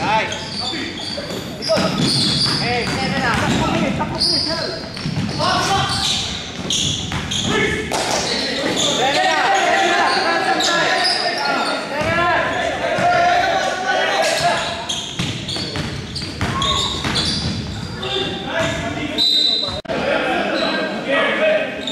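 Basketball being dribbled on a hardwood gym floor, with voices of players and spectators calling out throughout, carried by the reverberation of a large gym hall.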